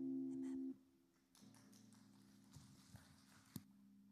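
The last chord of a steel-string acoustic guitar rings and is damped by hand, cutting off under a second in. A few sharp knocks follow, the loudest near the end, as the microphone is handled and lifted from its stand.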